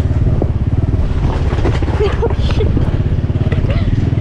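Motorbike engine running at low speed with a rapid, even low putter, heard from the pillion seat while riding.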